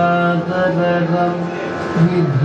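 Kathakali padam sung by a male voice in slow, held melodic phrases over a steady drone.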